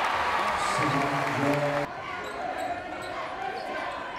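Basketball game sound in a gym: loud crowd and court noise for about the first two seconds, with a short held tone just before it ends. The sound then drops suddenly to quieter gym sound with faint voices.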